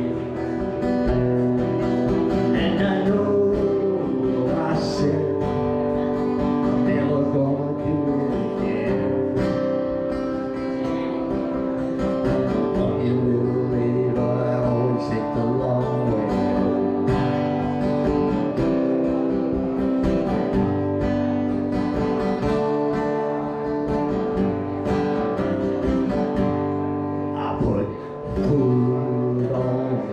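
Acoustic guitar strummed steadily in an instrumental passage of a song.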